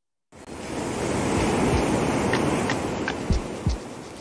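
Ocean waves washing in, a steady rush that swells up out of silence about a third of a second in, with two deep thumps near the end.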